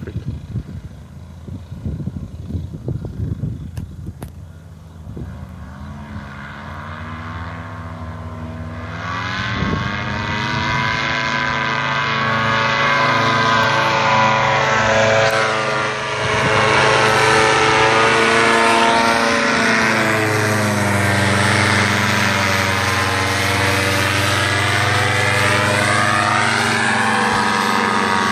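Paramotor (powered paraglider) engine and propeller running at low power with some clicking and rustle, then opened up to full throttle about nine seconds in for the takeoff and climb. The full-power drone stays loud, dips briefly once, and slowly wavers in pitch as the paramotor climbs away.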